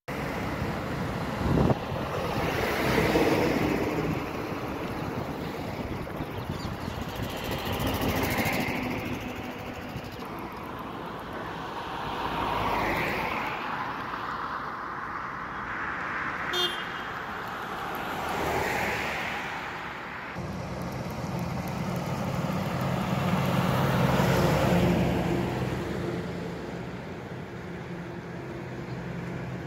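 Highway traffic: vehicles, trucks among them, passing one after another, each swelling and fading in a wash of engine and tyre noise. A short high beep comes a little past halfway, and a low steady engine drone sets in for the last third.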